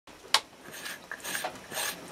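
An old piece of glass scraping shavings off a wooden stick, in three short strokes about half a second apart. A sharp click sounds near the start.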